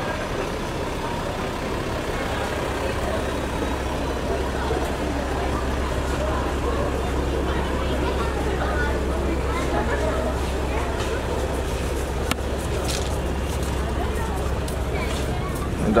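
Steady low engine rumble of a Range Rover SUV rolling slowly past close by, under indistinct chatter from the people around it.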